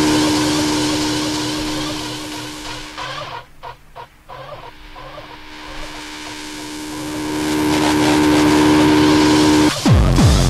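Hardtek tekno track in a breakdown: the kick drum drops out, leaving a sustained synth drone over a repeating bass pulse. It thins and dips in the middle with the highs cut away, then swells back up until the kick drum returns just before the end.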